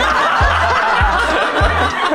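People laughing over background music with a steady kick-drum beat and bass line, about one beat every 0.6 seconds.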